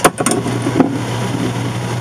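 Steady low machine-like hum with hiss, and a sharp click at the start followed by a few faint clicks as metal soldering tips are handled against each other.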